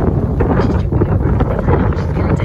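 Wind buffeting the camera microphone: a loud, steady low rumble.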